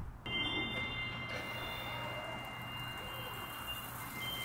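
Steady hiss of falling water, with a few faint steady high tones above it.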